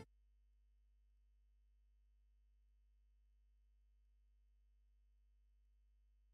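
Near silence: a gap in the broadcast sound, with only a faint steady low hum.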